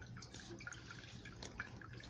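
Quiet background between phrases: a faint low hum with a few small scattered ticks, and no speech.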